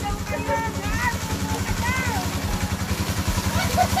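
A small engine running steadily with an even low throb, with voices calling out over it in the first two seconds.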